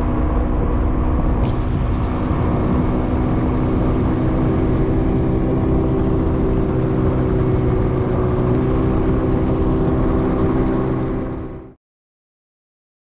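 Boat's outboard motor running steadily at cruising speed with a constant, even pitch, mixed with the rush of water and wind past the hull; it fades slightly and then cuts off suddenly near the end.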